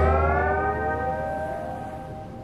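Music: a sustained chord ringing out and slowly fading, with some of its notes gliding upward in pitch.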